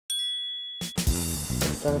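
A single bright bell-like ding, a chime sound effect played with the channel's logo card, ringing and dying away within about a second. After it, background music comes back in.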